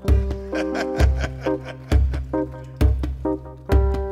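Live reggae duo on djembe and electric keyboard: sustained keyboard chords over a deep bass pulse about once a second, with sharp hand strikes on the djembe.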